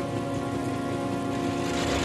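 Steady rain falling, with a sustained chord of background music held underneath it.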